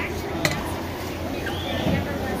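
Hand-cranked wooden automaton working, its mechanism giving a sharp wooden click at the start and another about half a second in, over a murmur of voices.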